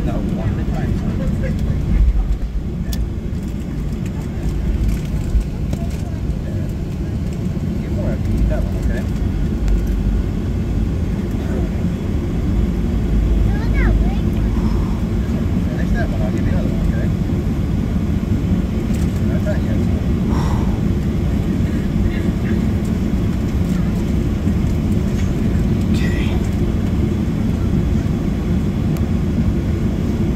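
Steady low rumble inside the cabin of a Boeing 737-700 as it taxis onto the runway, its CFM56-7B turbofan engines at taxi power.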